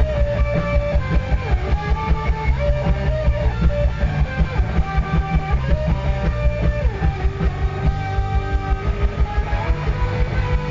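Live rock band playing: electric guitar lines that slide up and down in pitch over bass guitar and a steady drum beat, loud.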